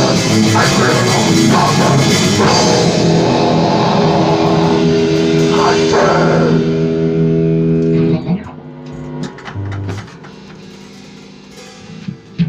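Death-metal song with distorted electric guitar and drum kit, ending on a held guitar chord that cuts off about eight seconds in. After it comes quieter room sound with a few scattered knocks.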